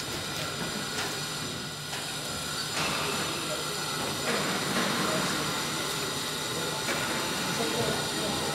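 Steady hiss and hum of a large indoor arena, with distant voices of people in the stands.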